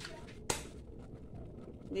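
A single sharp click as a gas stove burner is turned on and lit under a saucepan.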